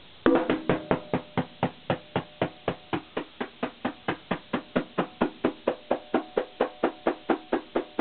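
Conga drum played by hand: a quick flurry of strokes, then an even, steady pulse of sharp strokes with a short ring, about four a second.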